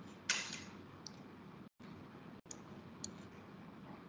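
A few faint, sharp clicks from someone working a computer, over the low steady noise of an open video-call microphone that cuts out briefly twice.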